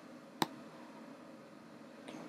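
A single sharp computer-mouse click a little under half a second in, over quiet room tone.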